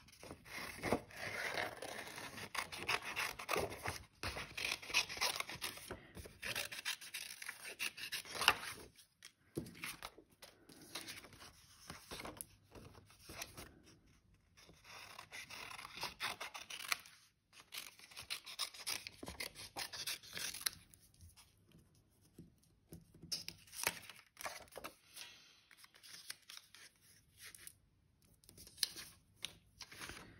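Small scissors cutting through patterned paper in short snips, with the paper rustling as the sheet is turned. The cutting is busiest in the first nine seconds or so, then comes in shorter spells.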